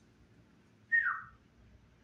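A single short whistle-like tone about a second in, held briefly and then falling in pitch before fading out.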